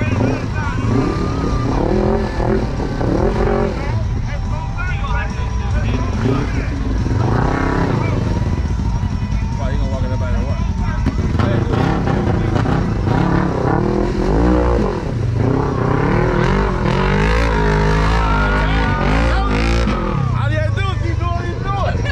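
Side-by-side UTV engine revving hard as it churns through deep mud and pulls out of the hole, with voices over it.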